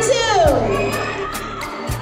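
A loud, shrill cry that slides down in pitch over about half a second, over background music and a steady low hum.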